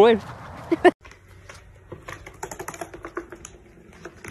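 A loud, wavering call or voice in the first second, cut off abruptly. Then a fast run of light taps and clicks: a duckling's feet pattering across a hardwood floor.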